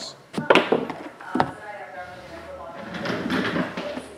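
A few sharp knocks on a tabletop in the first second and a half, between stretches of indistinct talking.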